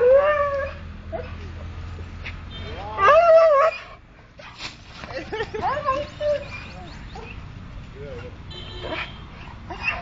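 German Shepherd whining and yelping in excitement at greeting its returning owner: a long drawn-out whine fading in the first second, a loud wavering outburst about three seconds in, then softer rising whines.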